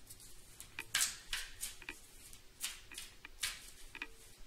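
A deck of tarot cards being shuffled by hand: a string of short, papery swishes and snaps at irregular intervals.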